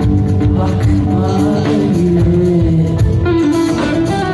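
Live band of electric guitars, keyboard and drum kit playing a Turkish rock song, with a woman singing long held notes into a microphone.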